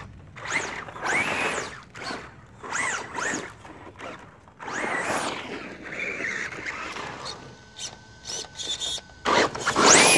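Traxxas Rustler VXL RC truck's brushless electric motor whining up and down in repeated bursts of throttle as it drives over dirt. The loudest burst comes near the end as the truck passes close by, with a rush of tyre and gravel noise.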